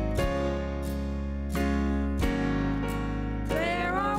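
Acoustic guitar music: sustained chords struck every second or so, with a higher melody line with vibrato coming in near the end.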